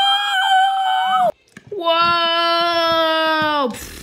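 A person's voice making two long drawn-out vocal cries for a toy train character. The first is higher; the second, about two seconds in, is lower and held longer before dropping in pitch at its end.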